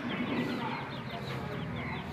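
Birds calling: a rapid string of short, high chirps, several a second, over a low steady background rumble.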